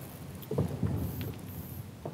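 A few soft knocks and thumps as people sit down on stage chairs, mostly between about half a second and a second and a quarter in.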